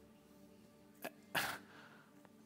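Quiet pause with a faint steady hum. About halfway through comes a small click, then a short, sharp breath close to the microphone.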